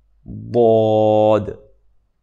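A man's voice pronouncing the Arabic letter ḍād (ض) in tajweed style, holding its long vowel for about a second on one steady pitch.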